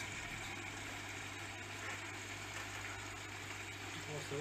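Steady hum of aquarium air pumps and sponge filters, a constant low drone with an even hiss of bubbling water over it.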